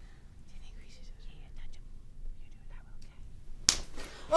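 Faint whispering and soft rustling, then a single sharp snap a little before the end.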